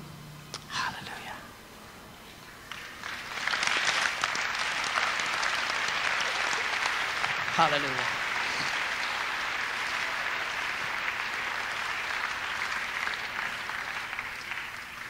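Audience applause that swells up about three seconds in and then carries on steadily, with a brief voice heard through it about halfway.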